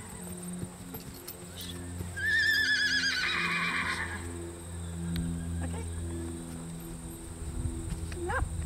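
A horse whinnies once, about two seconds in: a high, wavering call of nearly two seconds that drops lower and rougher before it ends.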